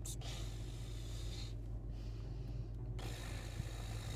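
Steady low hum inside a parked car, with a man breathing out softly through his nose twice, once near the start and again about three seconds in.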